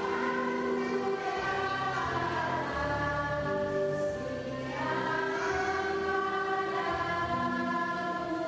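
A church choir singing a hymn in long held notes, several voices together.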